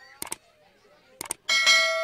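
Two pairs of sharp light clicks, then a bell struck once about one and a half seconds in, ringing on with several steady tones as it fades.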